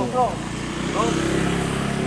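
Men's voices calling out over a steady low engine hum, with short calls at the start and again about a second in.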